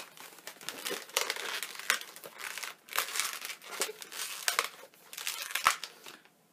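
Latex modelling balloons being twisted and squeezed by hand, their skins rubbing against each other and against the fingers in irregular bursts.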